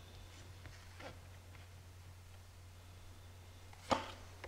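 Tarot cards being handled and laid down on a cloth-covered table: a few faint soft card sounds in the first second and a half, then a sharp tap just before the end. A low steady hum runs underneath.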